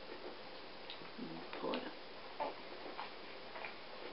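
Faint, scattered clicks and ticks of hands working a knitted piece off the pegs of a plastic knitting loom.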